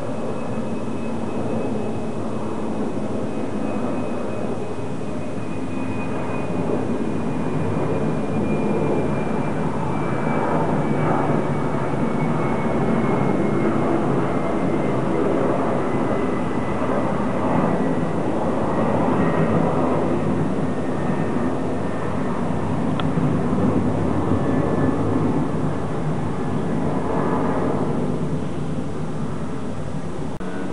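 Jet airliner flying overhead: a steady, broad engine rumble that swells a little in the middle, with a thin high whine that slowly falls in pitch as the plane passes.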